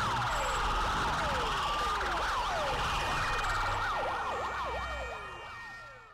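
Siren sound effect: repeated falling whoops that overlap and come closer together after about three seconds, over a steady hum. It fades out near the end.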